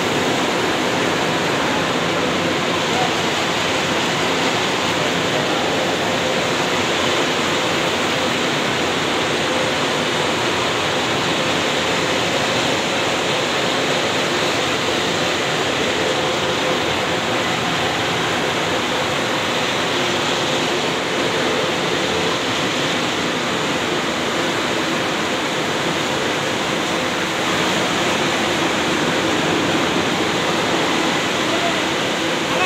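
Steady, loud din of spinning-mill machinery running together on the mill floor: an even rushing hiss with a faint steady hum underneath.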